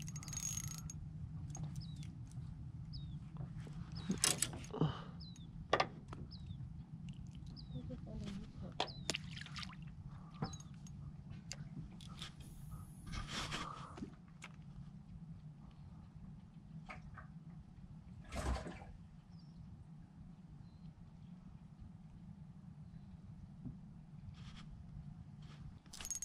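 A hooked bluegill splashing at the water's surface at the start, followed by scattered knocks and clicks over a steady low hum.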